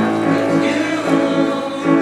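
Men's choir singing held notes.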